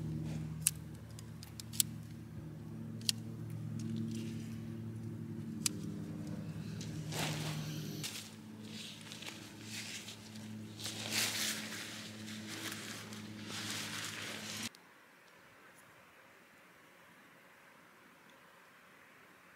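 A tent being pitched: sharp clicks from the sections of a shock-corded tent pole, then rustling of the nylon tent fabric being handled, over a low steady hum. It all stops abruptly near the end.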